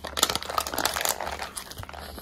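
A bite into fried chicken held in a paper sleeve: the paper crinkles in the hand and the coating crunches, a dense run of small crackles that is busiest in the first second and fainter after.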